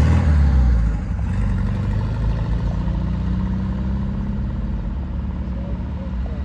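A chopped, shortened Volkswagen Kombi bus driving past and away, its engine running with a low drone, loudest in the first second and then steady.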